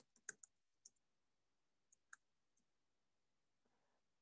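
A few faint, scattered computer keyboard key clicks, most in the first second and one about two seconds in; otherwise near silence.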